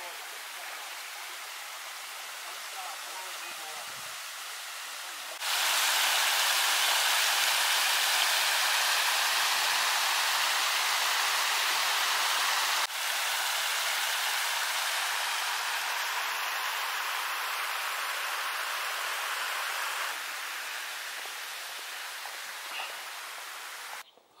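Water of a rocky mountain stream running over stone slabs and small cascades: a steady rush of flowing water. It gets clearly louder about five seconds in and eases off toward the end.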